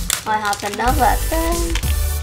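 A young girl's voice over background music with a steady bass, with a few held notes about two-thirds of the way in.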